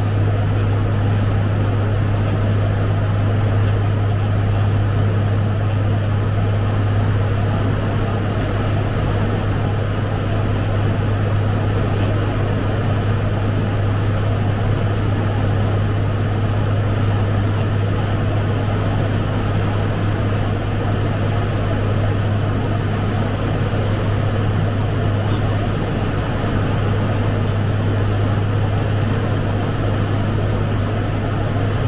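Fokker 50 turboprop's engines and propellers droning steadily in cruise, heard from inside the cockpit, with a strong, constant low hum under an even rushing noise.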